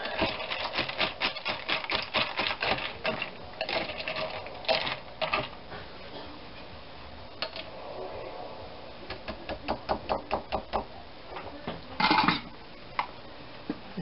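Wire whisk beating a thin egg-and-cream mixture in a glass bowl: quick rhythmic clicking of the wires against the glass, about five strokes a second, in two spells. A louder short clatter comes near the end.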